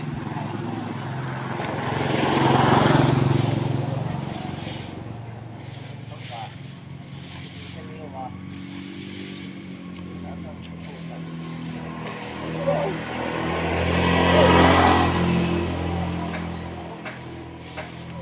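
Two motor vehicles pass by in turn, each swelling up and fading away over a couple of seconds, one about three seconds in and one about fourteen seconds in, with a low engine hum between them.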